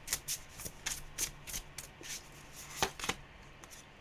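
A hand-held tarot deck being shuffled: a run of quick, light card clicks that thins out, with one sharper snap near three seconds in.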